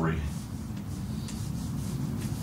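Dry-erase marker rubbing on a whiteboard in short strokes as letters are written.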